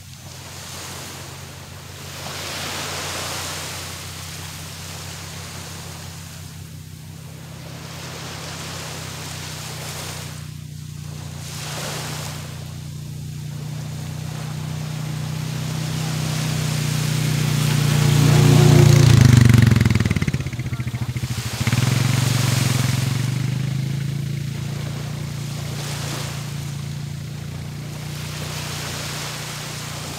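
Small waves washing onto a sandy shore every few seconds, under a steady engine hum that grows louder, peaks about two-thirds of the way through with its pitch dropping as it passes, and then fades away.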